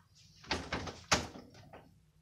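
Interior door being worked in its frame: two thuds about two-thirds of a second apart, the first about half a second in.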